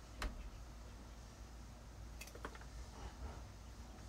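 Scissors snipping strawberry runners and dead leaves: a sharp snip just after the start, then a few quicker snips about two and a half seconds in.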